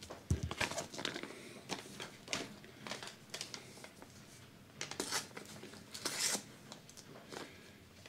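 A paper seed packet being handled and worked open by hand: irregular rustling and crinkling, with louder crackles about five and six seconds in. A soft knock sounds just after the start.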